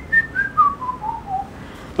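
A man whistling a descending run of about seven stepwise notes, a single pure tone falling from high to middle pitch. It sounds the range of the voice's second formant, the resonance that colours the vowels.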